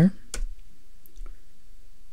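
Computer keyboard: one sharp keystroke about a third of a second in, the Return key entering a typed command, followed by a couple of faint clicks.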